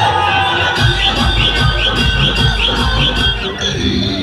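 Electronic dance music played at high volume through a large outdoor DJ sound system. A heavy deep bass comes in about a second in, under a short high rising chirp repeated about four times a second, and the music cuts out just before the end.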